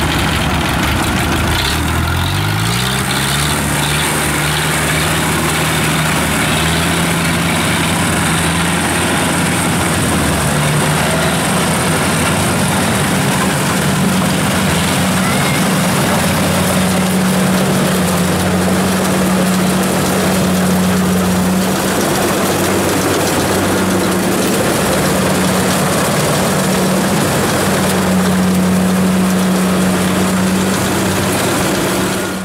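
Diesel engine of a Kubota DC-70 rice combine harvester, with a small grain cart's engine, running loudly in a rice paddy. One engine speeds up about two seconds in and then holds a steady high note.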